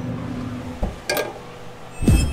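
Yoder YS640 pellet smoker's fan running with a steady low hum, broken off by a sharp knock about a second in, then a quieter stretch.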